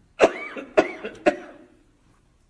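A man coughing three times in quick succession, about half a second apart.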